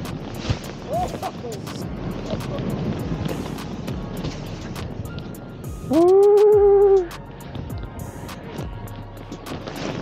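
Snowboard riding through deep fresh powder, a steady rushing hiss with wind on the microphone and snow crunching. About six seconds in, a rider gives one loud held whoop lasting about a second.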